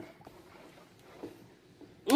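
Faint sloshing of a wooden spoon stirring a thin soap mixture of used frying oil and lye solution in a plastic basin.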